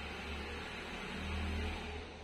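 Steady low background hum with a faint hiss, no distinct events: room noise under the recording.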